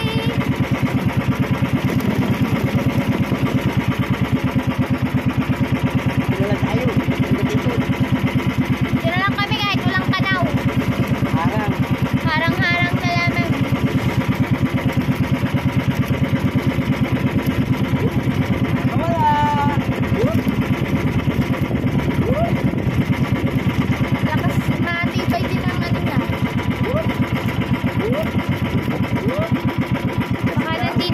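Outrigger boat's engine running steadily with a fast, even throb, with brief snatches of voices a few times.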